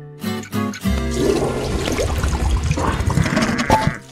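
Cartoon toilet flush: a rushing, gurgling water noise starting about a second in and lasting nearly three seconds, stopping suddenly near the end, over light background music.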